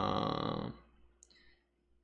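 A man's low, wordless 'mmm' hum held for about a second, then quiet with a couple of faint clicks.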